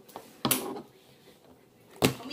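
A single short, sharp knock about half a second in, then quiet room tone.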